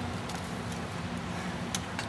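Steady low background hum with a faint click near the end.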